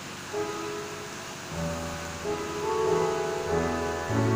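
Piano accompaniment playing sustained chords, with low bass notes joining about halfway through and the playing growing louder toward the end.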